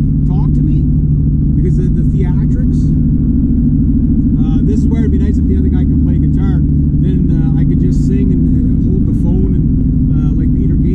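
Honda Civic's engine and tyre noise heard from inside the cabin while cruising at highway speed: a loud, steady low drone, with a voice at times over it.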